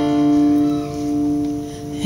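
Strummed acoustic guitar chord ringing on steadily, with no singing over it.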